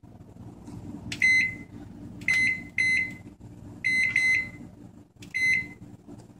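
Microwave oven keypad beeping as its buttons are pressed to set a timer: about eight short, high beeps in small groups, over a low steady hum.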